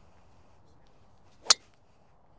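A single sharp crack about one and a half seconds in: a golf driver striking a teed ball. The ball is struck off the centre of the face, high on the heel.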